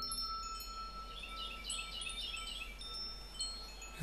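Quiet passage of the music: scattered high, chime-like tinkling tones, with a brief shimmering cluster of them in the middle, over a single held note that stops shortly before the end.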